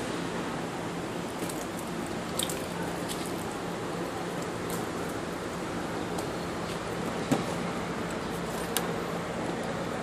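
Steady background hiss with a faint low hum, broken by a few light clicks; later on, a sharper click or two as a car door is unlatched and swung open.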